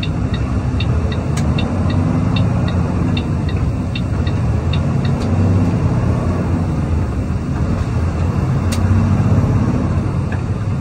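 Semi truck's diesel engine heard from inside the cab, pulling through the gears as the truck gets under way, its pitch rising and dipping with the shifts. A light ticking, about three a second, stops about halfway.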